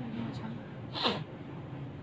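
A woman's short, breathy vocal burst about a second in, falling in pitch.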